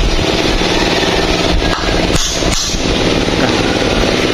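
Claw hammer driving a nail into a wooden beam, a few sharp blows about one and a half to two and a half seconds in, over a small engine running steadily.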